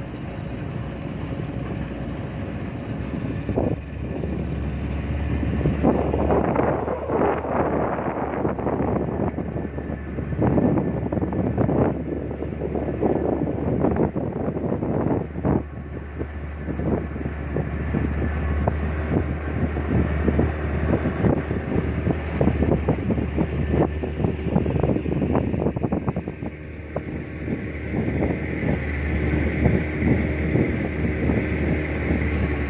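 Speedboat outboard motor running steadily under way, a constant low drone, with gusty wind buffeting the microphone.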